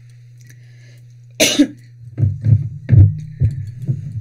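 A person coughs: one sharp cough about a second and a half in, then a run of five or six shorter coughs and throat-clearing.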